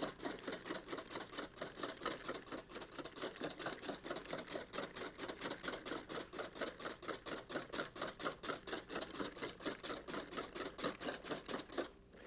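Large wire balloon whisk beating heavy cream in a stainless-steel bowl chilled over ice: a steady, rhythmic clatter of about four to five strokes a second as the wires strike and scrape the metal bowl. The cream is still being whipped up and is not yet at the soft, finished consistency.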